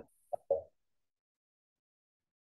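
Two short, soft blips within the first second, then dead silence on the video-call audio.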